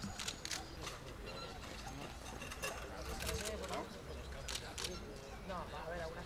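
Low, scattered voices of a group outdoors with several sharp camera shutter clicks, a few near the start and a pair about four and a half seconds in.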